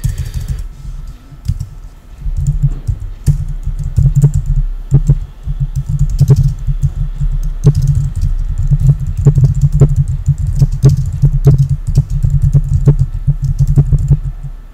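Typing on a computer keyboard: a quick, irregular run of keystrokes, each with a dull low thud, picking up about two seconds in.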